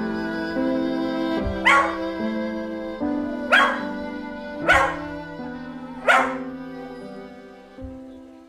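A Scottish terrier barking four times, a second or more apart, over background music of slow held notes that fades toward the end.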